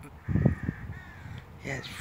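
Birds calling steadily in the background, with a loud, short, low thump about half a second in.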